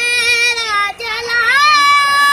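A high-pitched voice singing long held notes loudly. It breaks off about a second in, then comes back and rises to a higher sustained note.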